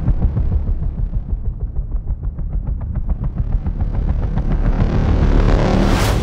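Film trailer sound effects: a deep, heavy rumble with a fast pulsing in the middle, swelling louder toward the end.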